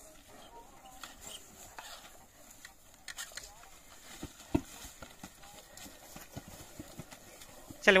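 Scattered, irregular hoof thuds of horses walking through grass and a muddy ditch, with a sharper knock about four and a half seconds in.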